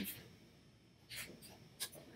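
Quiet room tone with a soft rustle about a second in and a single short click near the end.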